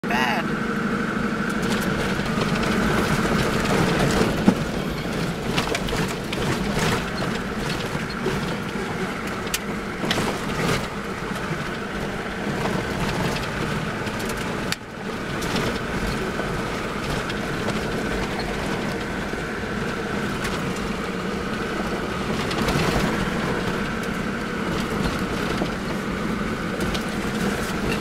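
Toyota Land Cruiser 60 Series driving slowly over a bumpy, rocky dirt track, heard from inside the cab: a steady engine and drivetrain hum, broken by frequent knocks and rattles as the vehicle jolts over the bumps.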